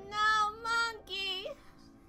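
A high-pitched voice singing three short held notes, one after another, ending about a second and a half in.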